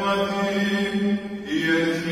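Byzantine chant from the Orthodox Holy Unction service: long held sung notes over a steady low note, the melody stepping up in pitch about one and a half seconds in.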